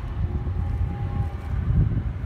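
Wind buffeting the microphone over the low drone of a distant cable yarder hauling a turn of logs in on the skyline, with a faint steady whine in the first half.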